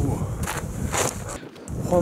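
Wind blowing on the microphone, with two footsteps on rock about half a second apart. The sound drops out for a moment near the end.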